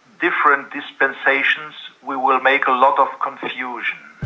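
Speech only: a man talking over a video-call link.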